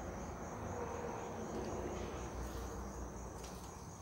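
Insects chirring in one steady high tone, with a faint low rustle beneath.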